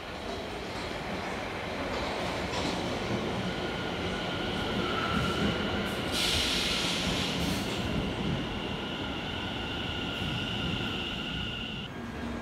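London Overground Class 710 electric multiple unit running past over the tracks, with steady high-pitched wheel squeal through the second half and a brief burst of hiss about six seconds in.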